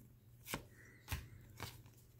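Football trading cards being flipped through in the hands: three faint short clicks of card stock, about half a second apart.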